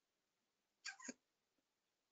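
Near silence, broken about a second in by one short vocal sound of about a third of a second with two quick peaks, picked up faintly by a call participant's microphone.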